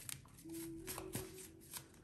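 A Steampunk Tarot deck being shuffled by hand: a quiet, irregular run of soft card clicks and slides.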